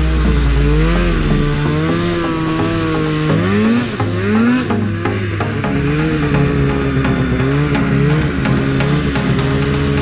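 Snowmobile engine running hard and revving up and down as the sled ploughs through deep powder, its pitch climbing sharply about three and a half seconds in, then holding steadier.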